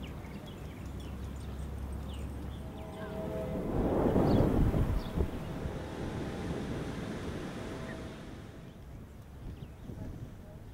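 Outdoor ambience with wind buffeting the microphone: a steady low rumble that swells into a louder gust about four seconds in, then settles back.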